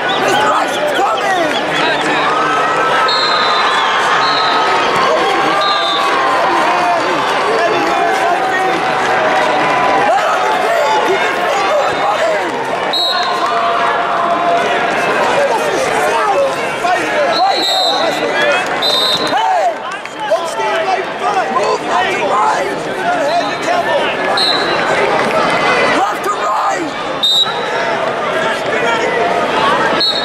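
Arena crowd at a wrestling tournament: many people shouting and yelling at once in a large echoing hall, with short shrill whistle blasts now and then from referees on the mats.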